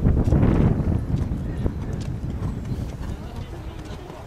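Horse's hooves thudding on a sand arena at a canter over a jump, loudest in the first second, then fading as the horse canters on.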